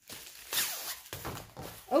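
Crinkling and rustling of a diamond painting kit's white wrapping as it is handled and unfolded, in several irregular strokes, the loudest about half a second in.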